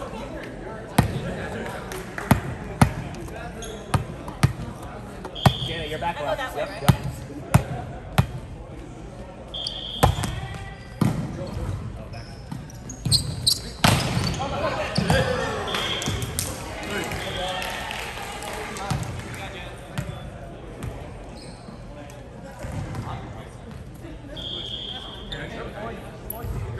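Indoor volleyball play in a gym: a series of sharp smacks of the ball being hit and bouncing, about ten in the first eight seconds and more in a rally around the middle, with short high squeaks of shoes on the hardwood floor and players calling out.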